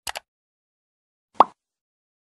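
Sound effects of an animated subscribe button: a quick double mouse click, then about a second and a half in a single short, louder pop.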